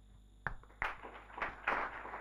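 An audience starting to applaud. After a near-quiet moment come scattered claps, growing denser toward the end.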